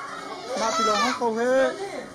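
Fairly high-pitched voices talking, children's voices among them.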